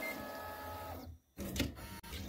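Neoden YY1 pick-and-place machine running a placement job: the gantry's stepper motors whine steadily, with several tones, as the head moves to find the fiducial. The sound breaks off briefly just past a second in, then comes back for a shorter move.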